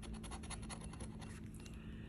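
The edge of a metal challenge coin scratching the coating off a scratch-off lottery ticket in rapid, quick strokes, stopping shortly before the end.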